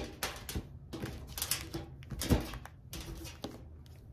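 A tarot deck being shuffled by hand: a run of soft, irregular papery slides and taps of cards, with one louder tap a little past halfway.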